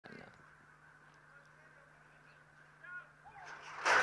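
Racetrack starting gates springing open near the end: a sudden loud burst of noise. Before it there is a faint stretch with a low steady hum and one short call about three seconds in.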